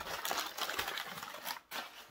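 Protective packing material rustling and crinkling as it is handled and pulled from a shipping box, in a dense run of small crackles. It stops about a second and a half in, with one short flurry after.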